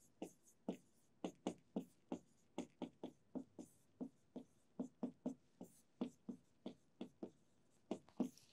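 Marker pen writing on a board: a faint, quick, irregular run of short strokes, about three a second.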